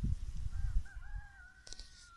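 A rooster crowing once: a single long call starting about half a second in, rising at first and then held, over a low rumble on the microphone.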